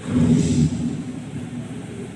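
Steady running noise of a hand-towel folding and cutting production line, with a louder, low-pitched sound lasting about half a second near the start.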